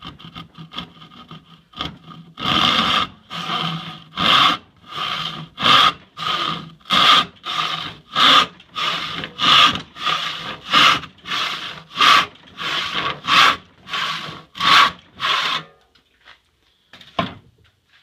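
Freshly sharpened Disston hand saw cutting a board clamped in a vise. A few light scratches start the kerf, then ten full push-and-pull strokes follow at an even pace for about thirteen seconds, each pass a loud, clearly separate rasp. A single knock comes near the end.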